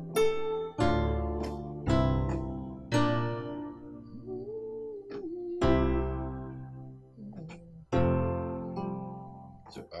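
Piano chords played on a keyboard, struck one at a time about a second apart and each left to ring and fade, with a longer pause in the middle. It is a slow worship-song chord progression.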